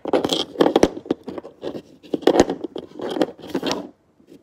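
Fingers rubbing and scraping right at the microphone in a series of loud bursts, with a few sharp clicks of dominoes being picked up and handled.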